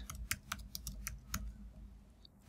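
Typing on a computer keyboard: a quick, irregular run of about ten key clicks that thins out in the last half second.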